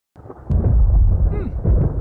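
Thunder rumbling, a deep rumble that swells in about half a second in and carries on.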